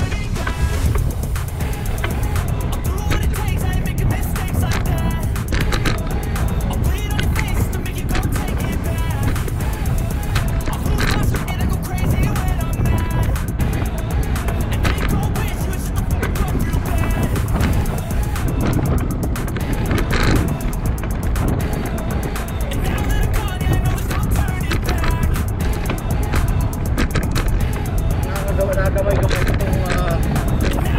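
Steady wind rumble on the microphone of a camera riding on a moving bicycle, with music playing underneath.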